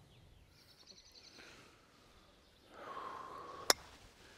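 A single sharp click near the end: a driver's clubhead tapping a teed golf ball during a small practice swing, nudging it off the tee by accident.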